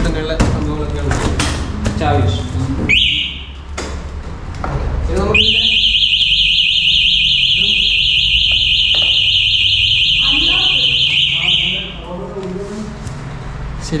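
Benling Aura electric scooter's anti-theft alarm sounding: a short high beep about three seconds in, then a high-pitched, rapidly warbling tone held for about six seconds before it cuts off.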